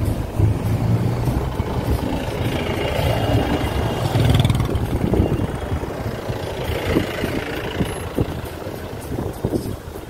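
Traffic in a slow-moving jam heard from inside a car: a steady low hum of idling and creeping engines, with road noise.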